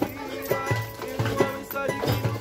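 Live pagode band playing: strummed cavaquinho and guitar over hand drum and pandeiro keeping a steady samba beat.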